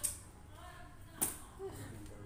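Two short, sharp clicks about a second apart, the second the louder, with faint voices in the background.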